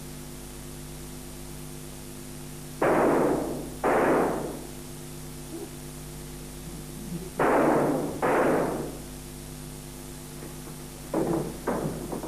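Four pistol shots fired from blank cartridges, in two pairs: two shots about a second apart, then two more about four seconds later. Each shot has a short echoing tail. A steady mains hum from the old tape recording runs underneath.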